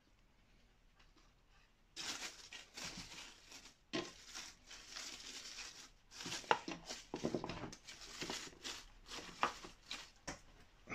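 Dry leaf litter crinkling and rustling under a hand as it is pressed and arranged, starting about two seconds in, with a few sharper crackles.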